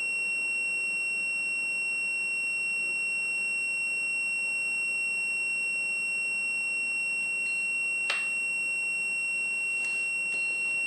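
Fluke digital multimeter's continuity buzzer sounding as one steady, unbroken high tone. The continuity means the frost stat's bimetal switch is still closed while the unit is cold.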